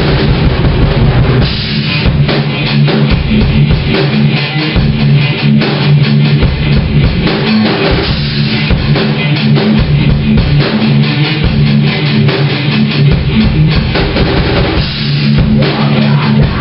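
Rock band playing loudly: electric guitar over a drum kit, with frequent bass-drum hits and a dense, continuous wash of guitar and cymbals.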